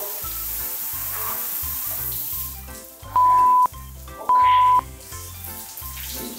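Water spraying from an overhead rain shower head, with a music beat underneath. In the middle come two loud, steady beeps of about half a second each.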